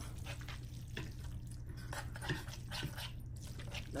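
Sauced ramen noodles being cut with a knife and lifted with a fork on a wooden cutting board: faint scattered wet clicks and squelches over a low steady hum.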